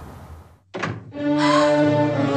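A single thud a little under a second in, then an orchestral film score with sustained string chords.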